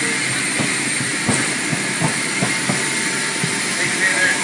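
Steady, loud aircraft noise, the hiss and rush of engines running at the plane, with scattered irregular knocks and clatters from the loading.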